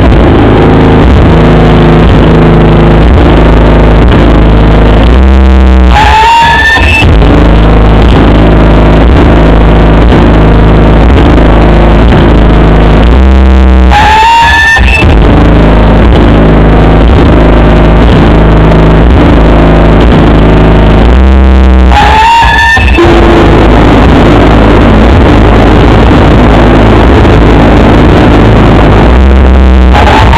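Live noise music played at full, distorted volume: a dense low drone stepping through short repeated pitches. It breaks off three times, about eight seconds apart, into a brief gap with rising squeals, then resumes.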